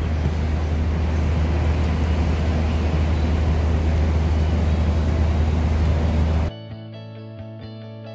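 Loud, steady outdoor background rumble and hiss with no distinct events. About six and a half seconds in it cuts off abruptly and background music takes over.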